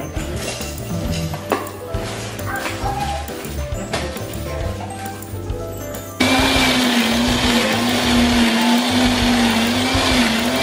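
Electric kitchen blender switched on about six seconds in, its motor running loud and steady with a slightly wavering hum as it grinds a spice paste of shallots, garlic, turmeric, ginger and whole spices. Background music plays before the blender starts.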